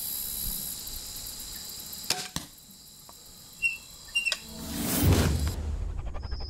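Barnett Wildcat II crossbow firing: two sharp cracks about a quarter second apart, the string's release followed by the bolt striking. Near the end a loud swelling whoosh sound effect rises into music.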